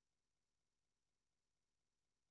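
Near silence: only a faint, steady electronic noise floor.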